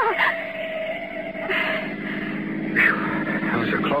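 Radio-drama sound effect of a car engine running at speed, a steady drone, as the car takes a sharp curve. Short higher-pitched sounds come over it, the loudest near the three-second mark.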